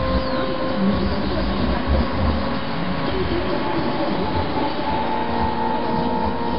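Soundtrack of dense, steady rumbling noise with a few sustained tones held over it, rail-like in character.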